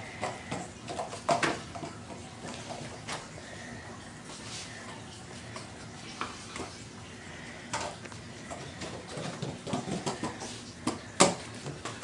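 Scattered knocks and clacks of a plastic penny board on a tile floor as it is ridden, with the loudest knock near the end.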